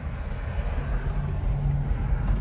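Low rumble of a car driving slowly, heard from inside the cabin. A low steady hum stands out in the second half.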